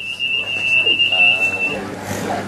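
An electronic alarm in a shop sounding one steady, high-pitched tone, which cuts off suddenly near the end.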